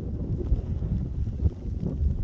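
Wind buffeting the microphone as a gusty low rumble, with a couple of brief bumps about half a second and a second and a half in.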